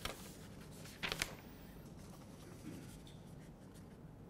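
Faint rustling and clicks over quiet room tone, with a brief click at the start and a louder cluster of rustle and clicks about a second in.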